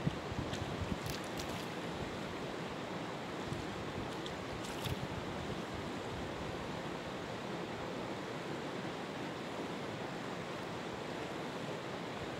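Steady rushing of river water, with wind buffeting the microphone. A few faint clicks come in the first second and again about five seconds in.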